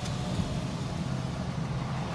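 Steady low hum of the car's engine and tyres heard from inside the cabin while driving slowly.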